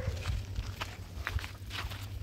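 Footsteps crunching on a dirt-and-gravel yard, a few steps about two a second, over a low steady rumble.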